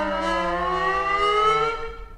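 A held synthesizer chord from Native Instruments Massive, played on a ROLI Seaboard, with each note pitch-bent on its own: some notes glide up and others glide down, crossing each other. The chord fades out near the end.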